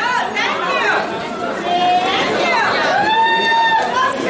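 A man speaking into a microphone with chatter around him, holding one long drawn-out syllable near the end.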